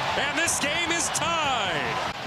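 A hockey play-by-play commentator talking over the broadcast, with a steady haze of background noise underneath.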